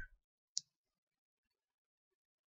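Near silence in a pause of the narration, with one faint, short click about half a second in.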